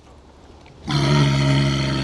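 A walrus calling: one long, loud, low, steady call that starts about a second in, after a second of faint background with a few light clicks.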